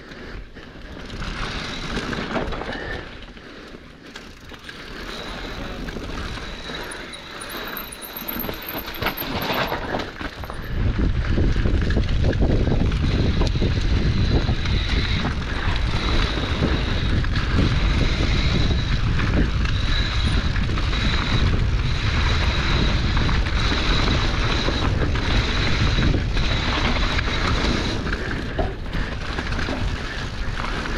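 Mountain bike riding down dry dirt singletrack: tyres rolling over dirt and leaves and the bike rattling over bumps, with a steady high whir that comes and goes, the rear hub buzzing while the rider coasts. About ten seconds in, a loud low rumble of wind on the camera microphone starts as the bike picks up speed, and it lasts to the end.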